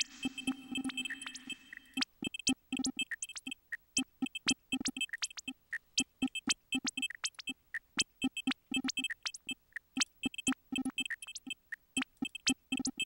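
Glitchy electronic drum pattern from a Reason Redrum kit run through Scream 4 distortion and digital delays: a fast, uneven run of sharp clicks and short pitched blips. About two seconds in, the smeared effect wash under the hits cuts out, leaving dry, crisp hits.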